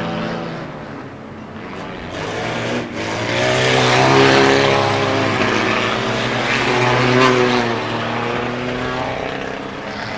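Several stock car engines racing round the track, revving up and down as the cars pass, loudest about four seconds in.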